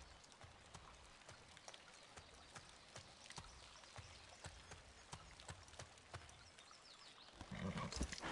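Horse's hooves clip-clopping at a slow walk, soft and regular, about two to three hoofbeats a second. Near the end a louder, lower sound comes in as the horse halts.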